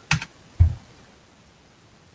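A few keystrokes on a computer keyboard in the first second, the loudest a heavier knock about half a second in.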